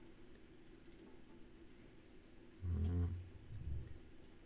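Quiet room tone, then about two and a half seconds in a short, low, closed-mouth 'mm' from a man's voice, rising slightly in pitch, followed by a second brief low murmur just before the end.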